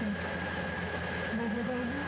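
Rice combine harvester running steadily as it cuts, a constant engine hum with a thin steady high tone over it. Faint voices in the background.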